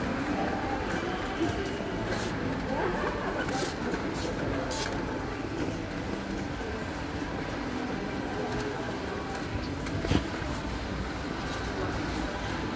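Supermarket crowd noise: indistinct shoppers' chatter over a steady low rumble, with a few short clicks and one sharper knock about ten seconds in.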